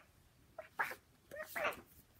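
A young girl's voice making a few short, soft syllables between lines while reading a picture book aloud.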